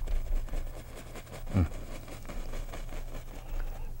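Faint scratchy ticks of a bristle brush being rubbed and pushed upward onto oil-painted canvas to lay in little bushes, over a steady low electrical hum. A short hummed "mm" comes about one and a half seconds in.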